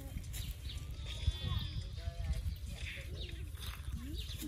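Low wind rumble on the microphone, with scattered voices of people nearby and a short wavering high-pitched call about a second in.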